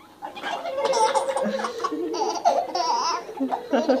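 A baby laughing while being tickled, in a run of high, squealing bursts that start about a third of a second in and keep going, with an adult laughing along near the end.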